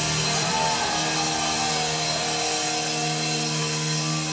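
Live rock band playing through a PA, with electric guitar holding long, steady notes and a note sliding down in pitch near the start.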